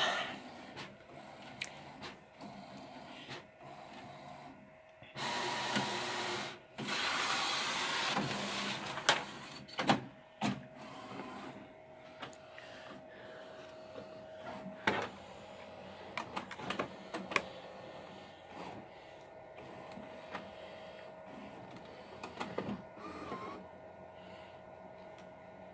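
Large-format printer at work: two loud, noisy passes of about a second and a half each, around five to eight seconds in, then scattered clicks and ticks over a faint steady tone.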